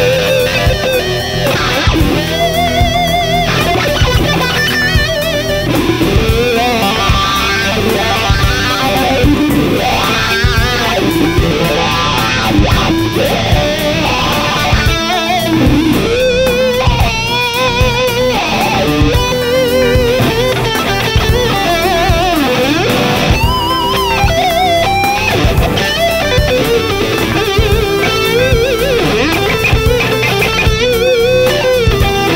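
Gibson USA 2017 SG Special T electric guitar playing a lead line over a backing track with bass and drums. Many held notes carry wide vibrato.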